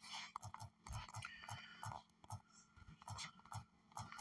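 Fingers tapping out a search on a smartphone's on-screen keyboard: a quick, irregular run of faint taps, several a second.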